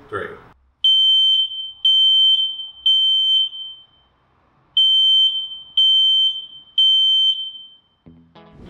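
A household smoke detector sounding its loud, high-pitched alarm after its test button is pressed. It gives two sets of three long beeps with a short pause between them, the three-beep evacuation pattern.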